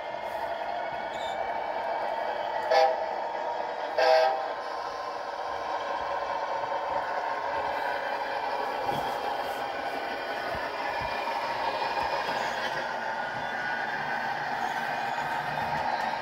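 Model diesel locomotive's sound-decoder horn giving two short blasts about a second apart, over the steady running sound of the model passenger train.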